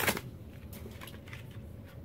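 A short crackle of a toy car's plastic blister packaging being pulled open, then faint handling of the packaging.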